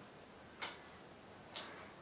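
Playing cards being dealt one by one onto a wooden tabletop: two light taps about a second apart.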